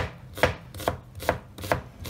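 Chef's knife thinly slicing a red onion on a plastic cutting board: the blade knocks down onto the board in an even rhythm, about five cuts, a little over two a second.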